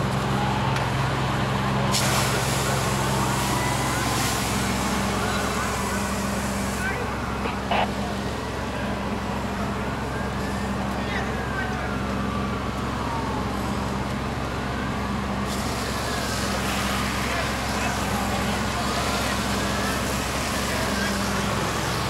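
Fire engine running with a steady low drone as a firefighting hose line sprays water onto a burning car, the spray hiss starting about two seconds in, stopping near seven seconds and starting again after the middle. Slow rising-and-falling siren wails sound in the background, and there is one sharp pop about eight seconds in.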